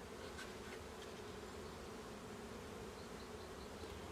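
A mass of Russian hybrid honeybees buzzing in a faint, steady hum as a package colony is shaken into its new hive.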